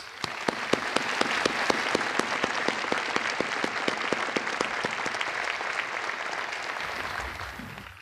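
Outdoor crowd applauding, a dense patter of many hands clapping that dies away near the end.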